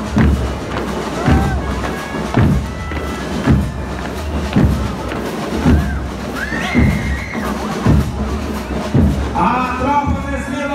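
Marching band's bass drum beating a steady marching cadence, about one beat a second, over crowd noise and scattered voices.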